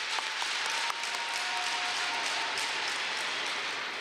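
A crowd applauding with steady clapping that holds at an even level throughout.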